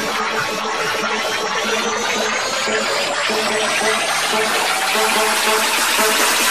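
Tech trance music in a breakdown: the kick drum and bass are out while a fast pulsing synth repeats. A rising noise sweep builds slowly across the section.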